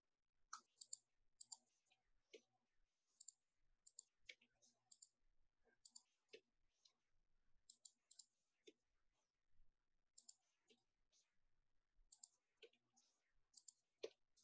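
Faint, scattered clicks of a computer keyboard and mouse during code editing: short single ticks at an uneven pace, a couple of dozen in all.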